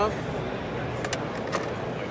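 Steady background din of a busy exhibition hall, with a few light clicks about a second in and again at about a second and a half.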